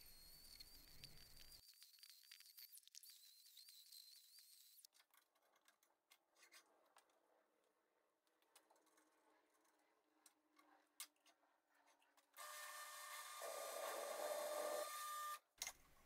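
Mostly near silence with faint hiss. About twelve seconds in, a drill press motor runs with a faint steady hum for about three seconds, then cuts off abruptly.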